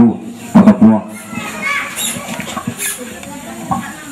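A short, loud voice burst about half a second in, then a quieter mix of people talking in the room, with children's voices among them.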